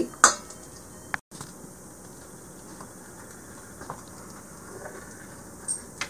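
Faint scraping and a few soft clicks of a table knife scoring a thin sheet of garlic scape butter on wax paper over a metal cookie sheet. The clearest click comes near the end.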